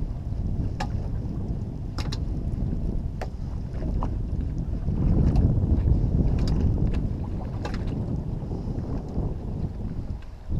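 Wind buffeting the microphone as a low rumble that grows louder about halfway through, with a scattering of light ticks and knocks over it.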